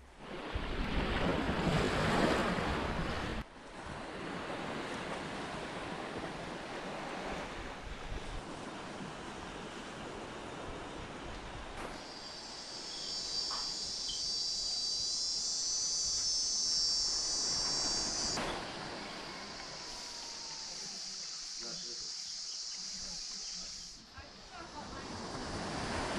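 Short outdoor ambient clips joined by hard cuts: a few seconds of rushing noise at the start, then a quieter stretch, then from about halfway a high, steady trill of insects that drops to a fainter trill near the end.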